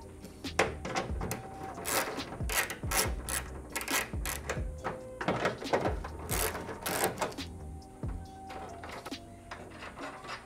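10 mm ratchet and socket clicking in quick, irregular runs as it unscrews the acorn nuts holding a plastic front grille, with quiet background music under it.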